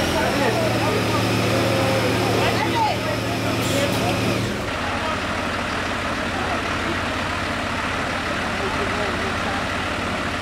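Fire engine idling, a steady low engine hum, with people talking over it. The hum changes abruptly about halfway through.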